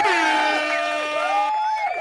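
Air horn sound effect played from a soundboard on the cue to make some noise: a loud, blaring blast whose pitch sags slightly at the start, thinning to a few wavering held tones about a second and a half in.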